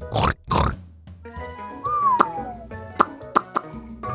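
Cartoon pig sound effect: two short oinks in the first second, then light children's background music with a falling gliding note and a few sharp clicks.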